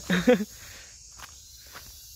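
A short voiced utterance right at the start, then footsteps on a dirt path, over a steady high drone of insects.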